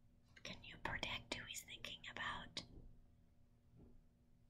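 A woman whispering a few faint words for about the first two and a half seconds.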